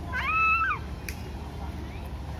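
A single high-pitched, meow-like cry, about half a second long, that rises, holds and then falls.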